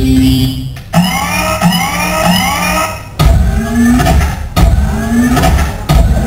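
Loud electronic dance music played for a popping routine, chopped with sudden stops. A run of rising sweeping tones repeats about every two-thirds of a second, then heavy bass beats come in.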